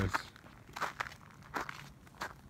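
Footsteps crunching in fresh snow, a handful of short crunches spread unevenly through the moment.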